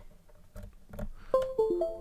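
A USB cable plugged into a Radiomaster TX16S transmitter with a few light clicks, then a short electronic chime of several notes stepping down in pitch, the alert that the USB device has connected.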